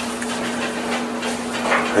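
Heavy rain falling, a steady hiss, with a steady low hum beneath it.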